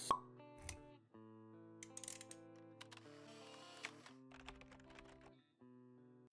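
Quiet logo-intro music: held chord tones with scattered light clicks, opening with one sharp pop-like hit.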